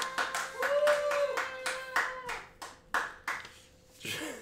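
Hand clapping at the end of a song: about fifteen irregular claps that thin out near the end, with a short held tone sounding over them partway through.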